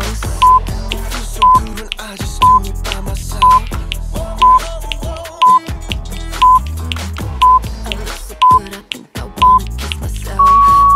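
Workout interval timer counting down the end of a rest break: ten short, identical beeps, one per second, over pop music with a steady beat.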